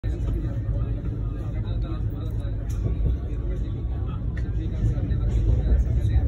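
Steady low rumble of a moving passenger train heard from inside the coach, with faint voices under it.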